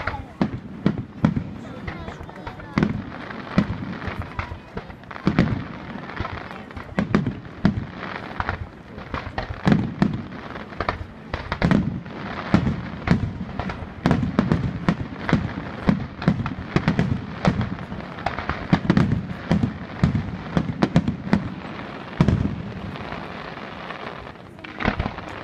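Aerial firework shells bursting in a dense barrage, booms following one another several times a second with crackle between them.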